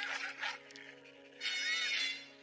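Film score holding sustained low notes. A short animal call that rises and falls in pitch comes near the end.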